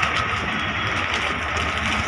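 A steady low mechanical hum with an even hiss, unchanging throughout.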